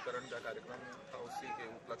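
A man speaking Hindi into the camera, his words continuing without a break.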